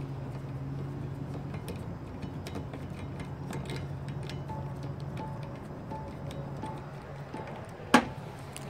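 Small metallic clicks and clinks from a steel windshield-wiper-arm puller being handled and worked off the wiper arm, with one sharper click near the end. Music plays faintly in the background.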